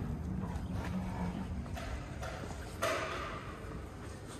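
A heavy glass door being pulled open by its brass handle, giving a low groan, followed by a few knocks and steps on a hard floor, the loudest about three seconds in.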